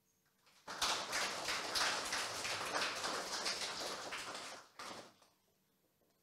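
Audience applauding, starting about a second in and fading out after about four seconds.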